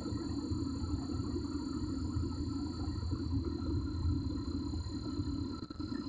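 Steady low background rumble, like a vehicle engine running, with faint steady high-pitched tones above it.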